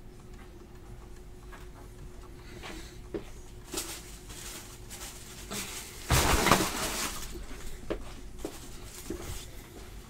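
Cardboard card boxes and packaging being handled on a table: scattered light knocks and taps, with a louder rustling burst about six seconds in that lasts about a second.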